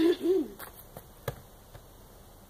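A short drawn-out voice sound at the start, rising and falling in pitch, then three light knocks, the last the sharpest, about a second and a half in.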